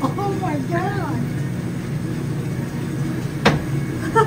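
Steady hum around a claw machine, with a couple of short high gliding calls in the first second and one sharp click about three and a half seconds in, as the prize-chute flap is pushed open to reach the prize.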